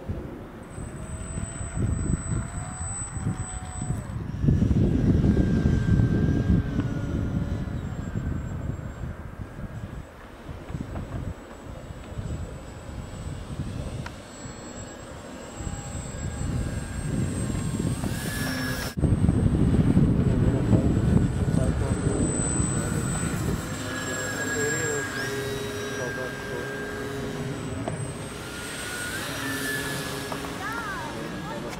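Radio-controlled model airplanes flying past, with a thin motor whine that glides up and down in pitch several times. Heavy wind buffets the microphone throughout.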